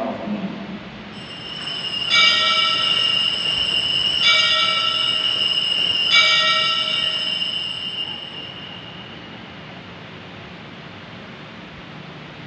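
Altar bell rung at the elevation of the chalice after the consecration. A faint ring about a second in is followed by three clear strikes about two seconds apart, and the ringing fades out by about nine seconds.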